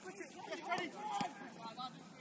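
Shouts and calls from footballers on an open pitch, with two sharp knocks about a second in.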